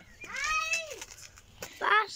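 A high-pitched, drawn-out vocal call whose pitch rises and falls like a meow, then a second short rising cry near the end.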